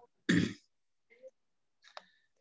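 A person clearing their throat once, briefly, a moment after the talk stops.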